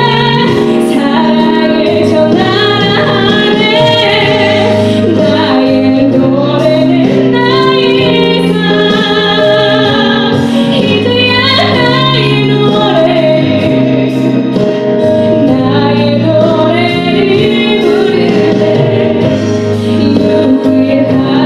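A young woman singing a solo worship song into a handheld microphone, her voice wavering with vibrato on held notes, over sustained instrumental accompaniment.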